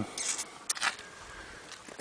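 A quiet pause with a few faint short clicks and rustles of handling, in the first second.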